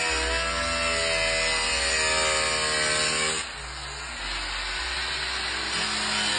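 Small angle grinder with a cutoff wheel cutting through a vehicle's sheet-metal bonnet, a steady whine. About three and a half seconds in the sound drops and turns rougher.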